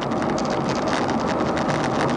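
Inside a car's cabin while driving at about 80 km/h: a steady rush of road, tyre and engine noise, with small irregular clicks or rattles through it.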